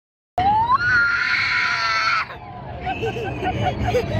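A young child's excited scream, starting about a third of a second in after a moment of silence. It rises in pitch and is held high for about a second and a half, then drops to quieter, broken vocal sounds.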